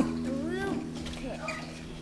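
Guitar chord ringing on and fading after a strum, with a few short quiet voice sounds gliding in pitch.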